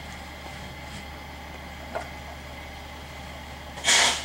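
Steady low background hum, with a faint tap about two seconds in and a short, loud, hissing noise burst near the end.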